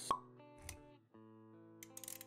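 Intro-animation sound effects over music: a sharp pop just after the start, the loudest sound here, and a second, duller hit with a low rumble about half a second later. After a brief drop near the one-second mark, soft sustained music notes take over.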